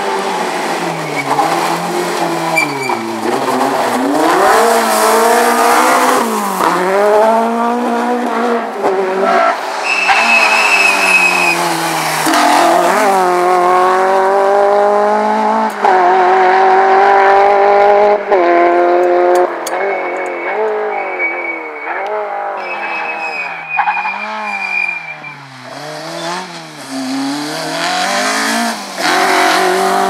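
Peugeot 205 rally car engine revving hard, its pitch climbing and dropping suddenly at several gear changes, then rising and falling quickly as the throttle is lifted and reapplied. Tyres squeal briefly in places.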